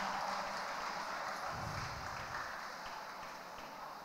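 Figure skate blades hissing and scraping over the ice as the skater glides into position, fading away as he comes to a standstill, over the hollow room tone of an ice arena.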